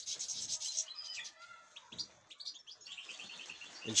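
A flock of European goldfinches twittering: many short, high chirps, busiest in the first second and again near the end.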